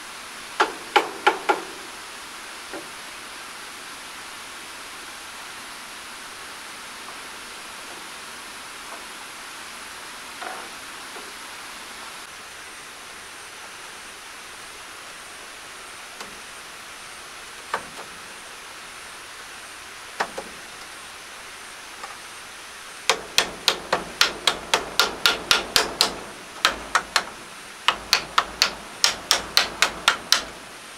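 Hammer driving nails into a wooden wall frame: a few quick strikes about a second in, scattered single knocks through the middle, then rapid runs of taps, about four a second, over the last seven seconds.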